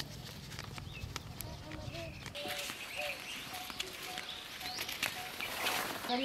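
Footsteps on grass, faint scattered soft steps, with distant voices heard faintly from about halfway through.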